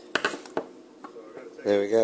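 Metal tin snips clacking: a few sharp metallic clicks close together at the start, then a couple of lighter taps. A man starts speaking near the end.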